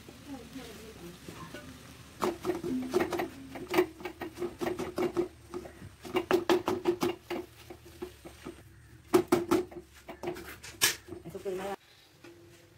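Wooden spatula scraping and knocking against an aluminium kadai while a thick potato and cabbage filling is mixed, giving a run of sharp irregular clicks.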